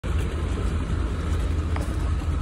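2008 Ford F-150 pickup's engine idling with a steady low rumble, running well.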